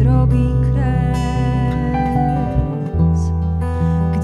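Live band playing a slow song: acoustic guitar, electric bass and keyboard, with a woman singing long held notes.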